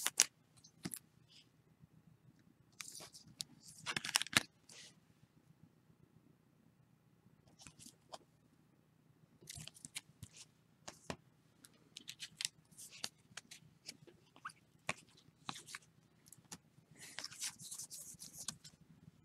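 Baseball cards being handled and slid against one another, making faint scattered rustles and clicks. The loudest cluster comes about four seconds in, there is a lull in the middle, and busier rustling returns in the second half.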